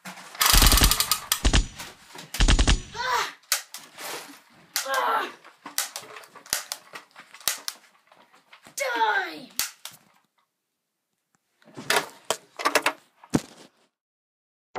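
A staged scuffle: a rapid, loud rattle of knocks in the first few seconds, then scattered thumps and bangs, with several yells that slide down in pitch. It goes quiet for a moment before a last few knocks near the end.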